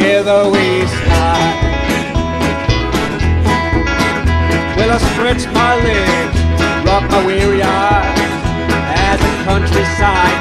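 Live blues band playing, with dobro resonator guitar and acoustic guitar over a steady beat from drums and double bass.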